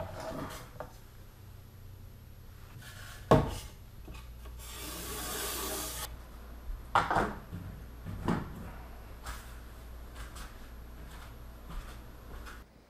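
Handling sounds of a styrofoam pontoon and a paper template rubbing and knocking on a wooden floor: a few short knocks and a brief scraping rush about five seconds in.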